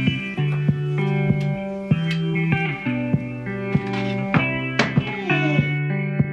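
Background music: a guitar-led track with plucked notes and a steady pulse.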